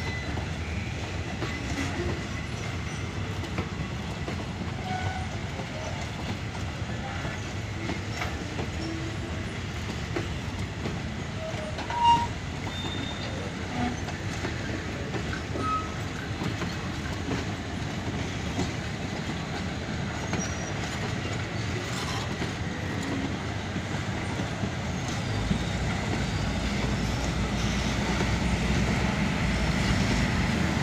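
Passenger coaches rolling slowly past over pointwork, wheels running on the rails with scattered short flange squeals; one brief sharp squeal about 12 seconds in is the loudest moment. Near the end a low drone grows louder.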